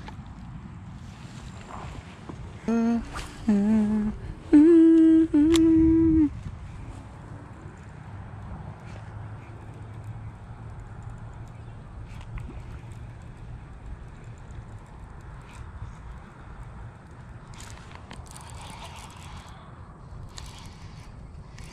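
A man humming four short notes close to the microphone a few seconds in, the last two higher, longer and loudest; afterwards only a steady low rumble.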